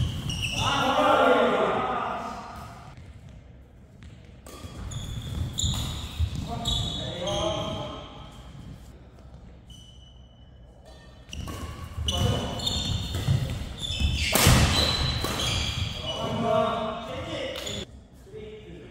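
Doubles badminton rallies: sharp racket strikes on the shuttlecock and quick footwork on the court, with players' voices calling out during and between points.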